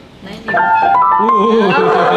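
Grand piano played, starting suddenly about half a second in: a loud run of notes with several sounding at once, moving in steps like a melody over chords.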